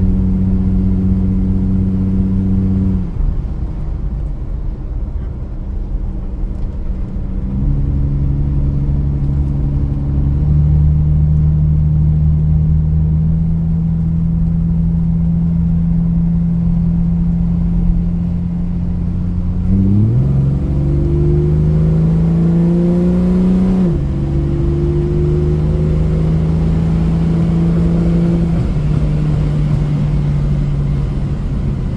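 Chrysler CM Valiant's newly replaced engine heard from inside the cabin on the road, running with its pitch stepping down and up as the throttle is eased and applied. About twenty seconds in, the engine revs up for a few seconds, then drops sharply as the automatic transmission changes gear.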